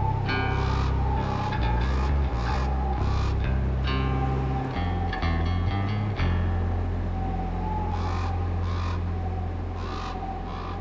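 Quiet heavy metal song intro: low sustained bass and guitar notes with a steady held tone above them, and raven calls cawing repeatedly over the music.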